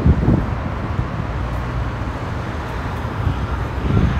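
Wind buffeting the camera microphone, a steady low rumble with gusty swells, over the background noise of city street traffic.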